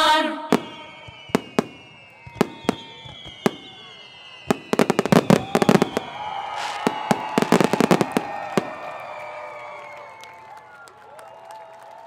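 Fireworks going off. Single sharp bangs come every second or so, then a dense run of crackling bursts about five seconds in and another near eight seconds, after which the sound fades.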